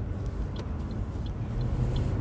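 Car running, heard from inside the cabin: a steady low rumble of engine and road noise that grows a little louder in the second half as the car moves off.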